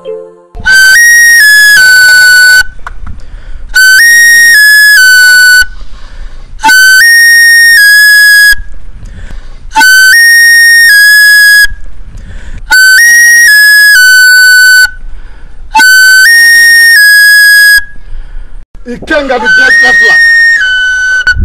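A small wooden flute played loudly, repeating the same short phrase six times, each about two seconds long with a short pause between. Each phrase starts on a note, steps up, then comes back down to the first note and holds it.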